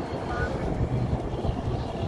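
Wind buffeting the microphone outdoors, a low gusting rumble.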